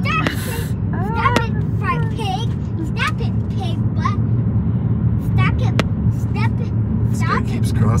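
Steady low rumble of a car's road and engine noise heard from inside the cabin while driving, with short snatches of voices over it.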